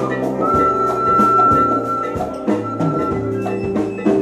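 Live salsa band playing, with hand-struck congas and drums keeping a busy rhythm under sustained chords, and a long high note held from about half a second in.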